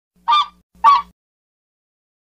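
Two short, loud honking calls of a waterfowl sound effect, given to swans in flight, about half a second apart, the second slightly louder.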